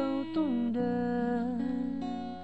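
A man singing a slow Thai song to his own acoustic guitar: a short sung phrase slides down and settles into one long held note over the guitar.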